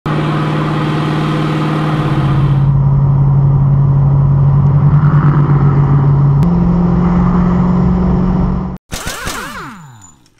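A Pontiac GTO's engine droning steadily at highway cruise, with wind and road noise, in clips cut together: the engine note drops at about 2 s and rises again at about 6.5 s. Near the end the drone cuts off suddenly, and a short swooping effect follows.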